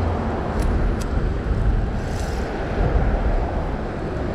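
Steady low rumble of wind and handling noise on a body-worn camera's microphone while a fish is fought on a fly rod, with a couple of faint ticks about half a second and a second in.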